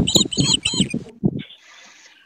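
A bird calling in a quick run of repeated high chirps, several a second, that stops about a second in, followed by a faint hiss.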